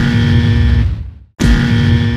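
A loud heavy-rock music sting: the same short guitar-led blast sounds twice in a row, each lasting just over a second, the second starting about a second and a half in.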